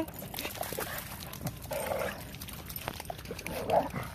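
A dog making a few short, quiet vocal sounds, with a brief whine near the end.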